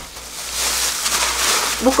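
Thin plastic bag, stuffed with newspaper and kitchen towel, crinkling and rustling as gloved hands gather and twist it shut; a continuous crackly rustle that builds from about half a second in.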